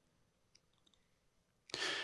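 Near silence with one faint tick, then near the end a short, sharp intake of breath close to a handheld microphone.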